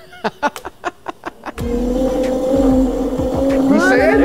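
Several sharp clicks, then about one and a half seconds in a small ride-on vehicle's motor starts running with a steady whine over a low rumble.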